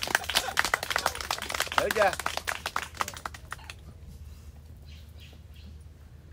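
A rapid, irregular run of sharp clicks and crackles that stops abruptly about three and a half seconds in, over a low steady hum.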